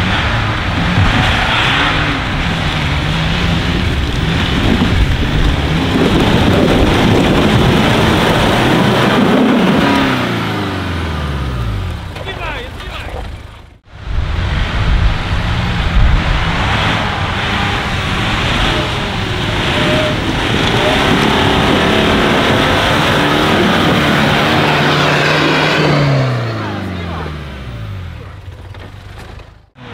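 Off-road 4x4 engines revving under load as the vehicles climb a steep dirt slope, the pitch rising and falling with the throttle. In each of the two shots the engine note slides down as the driver eases off, with a cut partway through.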